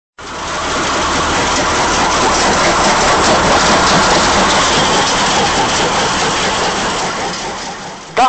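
Stone-crushing plant running: steady, dense machine noise with a low hum beneath it, fading in just after the start.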